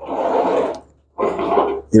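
Castors of a roll-about gas space heater rolling and scraping across a wooden tabletop as the heater is swivelled round by hand, in two pushes with a short pause between them.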